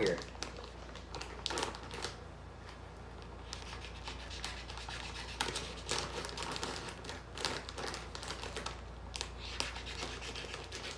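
Plastic snack pouch crinkling and crackling in irregular bursts as its sealed top is cut open with a kitchen knife.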